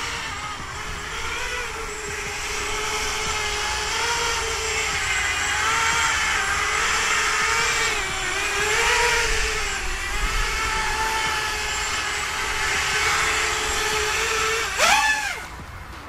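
EMAX Hawk 5 racing quadcopter flying close by on a 3S battery: the steady whine of its brushless motors and propellers, wavering in pitch as the throttle changes, a clean sound. Near the end the pitch briefly sweeps up and back down, then the sound drops away.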